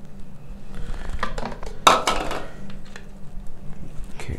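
Small knocks and clatter of objects being handled and set down, with one sharp, louder knock about two seconds in.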